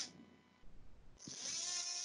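Surgical oscillating bone saw starting up about a second in and running with a steady whine, cutting the bone block from the kneecap for a quadriceps tendon graft.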